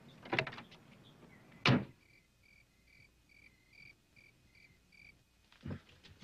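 A car door slams shut about two seconds in, after a few lighter knocks. A regular series of about eight short high chirps at one pitch follows, like crickets, and a thud comes near the end.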